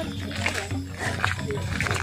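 Otter giving a few short calls that bend up and down in pitch.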